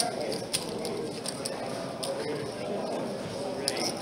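Murmur of background chatter around a poker table, with a few sharp clicks of poker chips being handled and stacked.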